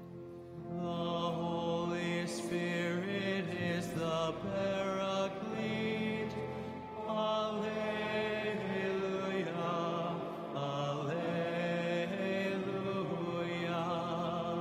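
Men's voices singing a slow liturgical chant, holding long notes that move in steps from one pitch to the next.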